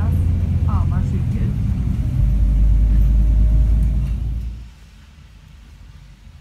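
Low, steady rumble of a bus in motion heard from inside the cabin, dropping away sharply about four and a half seconds in.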